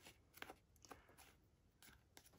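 Near silence, with a few faint, short rustles and taps from hands handling a small handmade paper journal trimmed with lace and embellishments, twice about half a second apart near the start.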